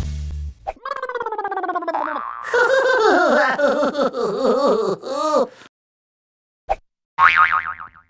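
Intro music cuts off just after the start, followed by cartoon sound effects: a falling pitched sweep, a run of bouncy, wobbling boings, about a second of silence, a single click, and another falling sweep near the end.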